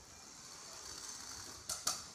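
Sphero robotic ball's small drive motors whining faintly and steadily as it rolls fast across a concrete floor, with two sharp clicks near the end.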